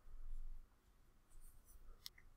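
Faint rubbing and a few light ticks from a computer mouse being slid and scrolled, over a low hum of room tone.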